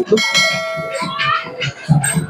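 A bell struck once near the start, ringing with many high metallic overtones that fade out over about a second and a half, over crowd voices.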